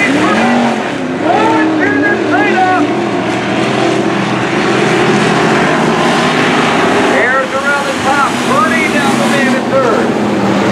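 Hobby stock race cars running together around a dirt oval, their engines loud and continuous as the pack goes by. An indistinct voice comes through over the engines near the start and again near the end.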